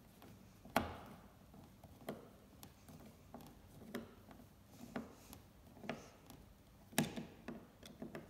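Hand screwdriver driving a 17 mm wood screw through a metal coat hook into a pine block: sharp clicks and creaks about once a second as each turn is made, the loudest about a second in and near the end.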